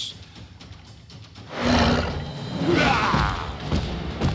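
A cartoon dinosaur-like alien, the Triceraton, letting out a loud, rough roar that starts about a second and a half in, over background music.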